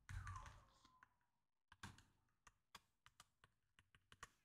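Faint keystrokes on a computer keyboard: a scattered run of single clicks through the second half, after a short faint sound at the very start.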